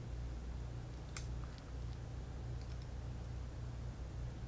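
Quiet handling: a few faint small clicks as an Allen key works a trigger set screw on a Luxe TM40 paintball marker, over a steady low hum.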